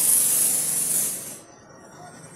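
A cloth rag being dragged off the plastic fuel-tank cover under a scooter seat: a rustling swish that stops about a second and a half in.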